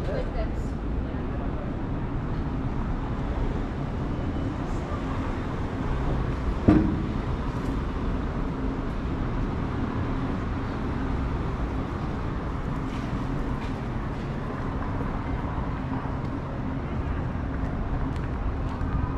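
City street ambience: a steady low hum of traffic, with voices of passers-by in the background and one sharp knock about seven seconds in.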